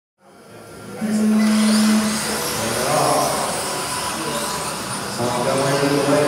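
Electric 17.5-class RC buggies with brushless motors running on an indoor track, their motor whine rising and falling in a large hall. A louder steady tone comes in about a second in and holds for about a second, and voices are mixed in.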